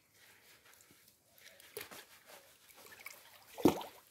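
Faint, irregular squishing of hands scrubbing shampoo lather into wet hair, with one short louder low sound near the end.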